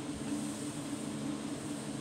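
Steady low machine hum with two steady tones and an even hiss, typical of a running electric fan or blower motor.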